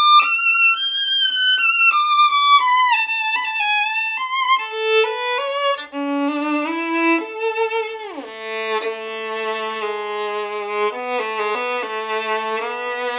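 Solo violin, a Holstein Workshop 'Il Cannone' model, played with vibrato: a melody that steps down from high in its range to low notes on the lower strings, with a quick downward slide about eight seconds in, ending on low sustained notes near the bottom of its range.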